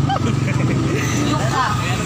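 Street traffic: a motorcycle engine runs with a steady low hum, and a short voice comes in about one and a half seconds in.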